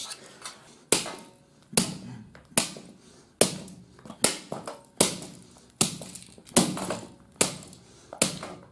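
A hatchet striking a broken DVD player's casing over and over: nine sharp blows, evenly spaced a little under a second apart.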